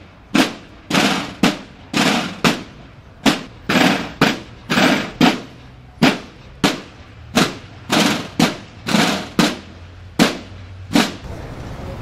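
Military drum corps snare drums beating loud single strokes, about two a second in an uneven marching cadence, stopping about a second before the end.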